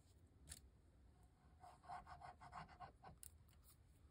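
Faint, quick back-and-forth rubbing of a glue stick over a paper cutout, about six strokes a second for a second and a half, with a light click before it and a few small ticks near the end.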